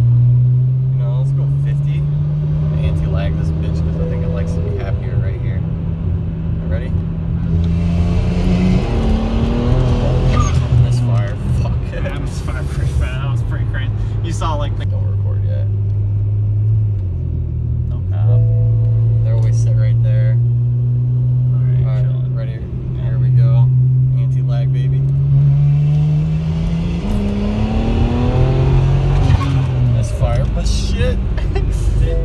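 BMW 335i's twin-turbo N54 inline-six with upgraded 19T turbos, heard from inside the cabin while driving, mostly running at low revs. The engine note rises in pitch twice under acceleration, about nine seconds in and again near the end, each time dropping back as the revs fall.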